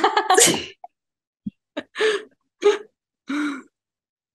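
Women laughing: a laugh trails off in the first moment, then several short breathy bursts of laughter follow one another, each cut off sharply into silence.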